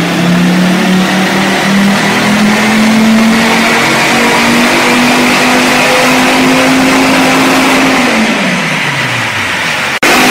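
Dodge Viper V10 with side-exit exhaust pipes making a dyno pull on the rollers. It runs loud under load, its pitch climbing steadily for about eight seconds, then the throttle closes and the revs fall away near the end.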